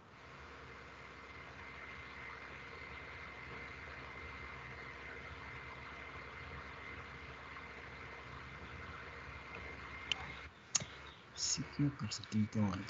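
Steady faint hiss of an open video-call audio line, with a thin high whine and a low hum: the speaker's audio has dropped out mid-sentence. A sharp click comes about ten and a half seconds in, and a voice starts near the end.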